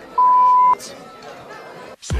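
A single loud, steady, high electronic beep at one pitch, lasting about half a second and ending abruptly with a click.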